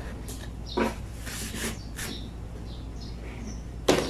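Airtight plastic food container being handled: a few clicks and rustles from its lid, ending in a sharper plastic knock just before the end.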